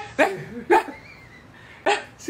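Corgi puppy barking three short, sharp barks, the last and loudest near the end after a second-long pause.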